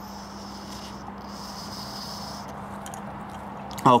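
Steady low hum and hiss of room noise, with a few faint small clicks near the end as a carburettor jet is handled.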